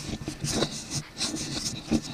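Rustling and scattered short knocks of a hand-held camera being moved about.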